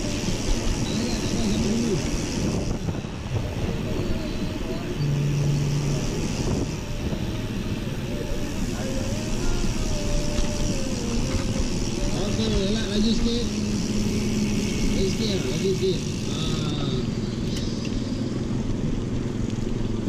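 Wind buffeting an action camera's microphone while riding a mountain bike at about 20 km/h, a steady low rumble, with indistinct voices of other riders in the group.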